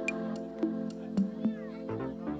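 Background music with sustained tones and a steady percussive beat. About one and a half seconds in comes a brief gliding, swooping sound.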